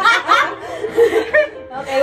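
Women giggling and laughing, loudest in the first half second, then dying down before a woman's voice near the end.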